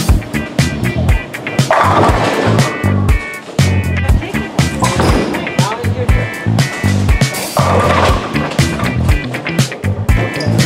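Music with a steady beat, over a 900 Global Volatility Torque bowling ball rolling down the lane and crashing into the pins near the end.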